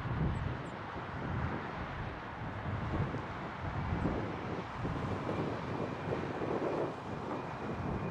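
Distant twin jet engines of an F/A-18F Super Hornet taxiing, a steady rushing noise, with wind buffeting the microphone.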